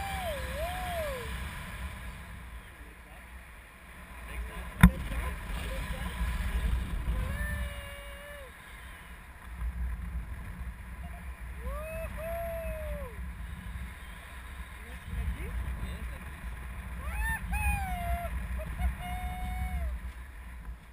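Wind buffeting the microphone of a tandem paraglider in flight, a steady low rumble. Short wordless voice sounds that glide up and down come through it several times. A single sharp knock comes about five seconds in.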